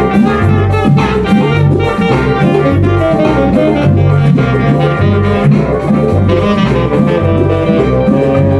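Live band music with a saxophone playing over a low bass line that repeats about once a second.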